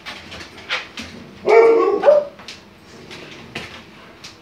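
A dog gives one drawn-out bark about a second and a half in, then a brief second bark just after, among scattered light clicks.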